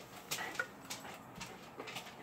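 A few soft taps and rustles of paperback books being put down and handled on a stack, with a brief faint squeak about half a second in.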